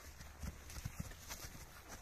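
A draught mare's hooves stepping on grass, a few soft, dull footfalls as she turns on her tether.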